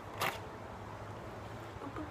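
A short rustle about a quarter of a second in, over a low steady hum.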